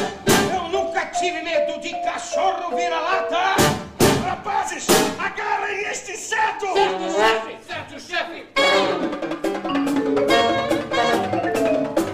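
A live chamber jazz ensemble playing, with drum-kit strikes and marimba over moving melodic lines. The music drops away briefly near eight seconds, then comes back in full.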